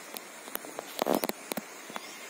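Footsteps on dry grass and earth along a rice-terrace bank: a handful of short, irregular scuffs and crunches, bunched about a second in, over a faint steady hiss.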